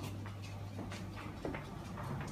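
A few faint clicks and knocks from footsteps and a handheld camera being moved while walking, over a steady low hum.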